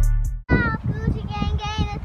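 Music cuts off abruptly about half a second in, followed by a young girl's high-pitched, sing-song voice with no clear words.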